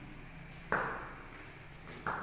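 A sudden sharp ping with a short ringing decay, a little under a second in, and a second sharp onset right at the end.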